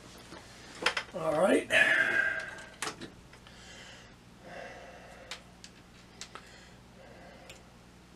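Small clicks and rattles of a clip-lead antenna wire being handled and fastened to a tube signal tracer's terminals. About a second in, a brief voice-like sound with rising pitch is the loudest thing.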